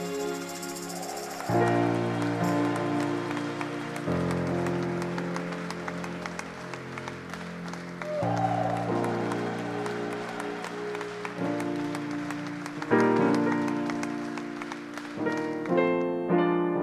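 Yamaha digital piano playing slow sustained chords that change every few seconds, with hand clapping throughout.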